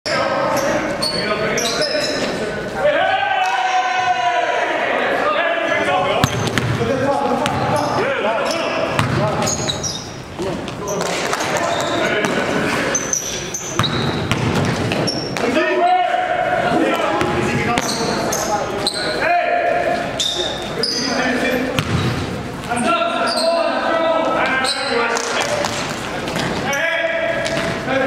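Live basketball game audio in a gym: a ball bouncing on the court, sneakers squeaking, and players' and onlookers' voices echoing in the large hall.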